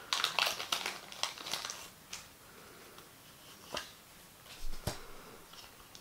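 Foil trading-card booster pack being torn open and crinkled by hand, a dense run of crinkling in the first two seconds, then a few faint ticks as the cards are handled.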